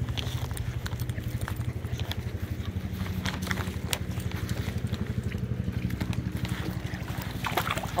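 A steady low engine drone with a fast, even pulse, like a motor running in the distance, with a few faint clicks over it.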